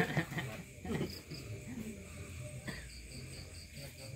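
Crickets chirping in quick, evenly spaced trains of short high pulses, a brief run about a second in and a longer one near the end, over faint murmured talk.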